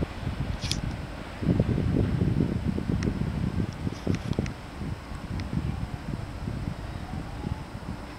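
Wind buffeting the camera's microphone as an uneven low rumble, heaviest from about one and a half to four and a half seconds in, with the faint running noise of the departing electric train beneath it and a few light clicks.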